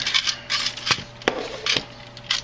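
Fingers rummaging through a small metal tin of screws and RC parts while looking for a wheel nut: scattered rattles with a few sharp clicks about a second in.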